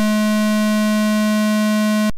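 Behringer 2600 synthesizer's VCO2 playing a square wave: one steady, unchanging pitched tone of about 212 Hz, held throughout.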